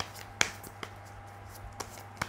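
A deck of tarot cards handled and shuffled: a few sharp, irregular card clicks, the loudest about half a second in.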